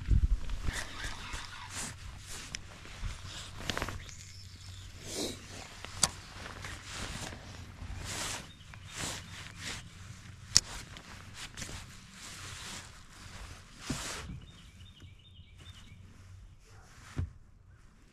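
Handling noise from a spinning rod and reel: irregular rustling and scuffing, with two sharp clicks partway through and a faint quick ticking near the end.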